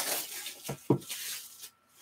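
Plastic shrink wrap crinkling and tearing as it is stripped off a trading card box, with two light knocks of the box being handled about two-thirds of a second and a second in.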